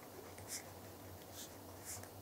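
Faint scratching of pens writing on notebook paper, in three short strokes across the two seconds.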